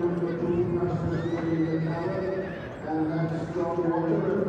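A Welsh Cob stallion whinnying: a high, wavering call about a second in, lasting about a second.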